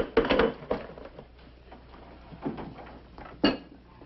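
A few sharp, scattered clinks and knocks of hard objects. The loudest come right at the start and about three and a half seconds in, with softer clicks between.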